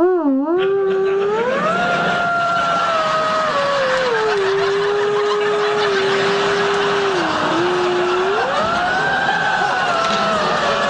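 Theremin playing a slow, sliding melody. A single tone wavers quickly at the start, glides up and holds, sinks to a long low note, then swells up again and falls near the end. Audience laughter comes in about two seconds in.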